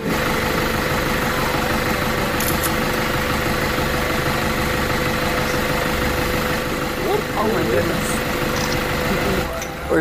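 Vehicle engine idling with a steady hum and a constant tone, with faint voices briefly about seven seconds in.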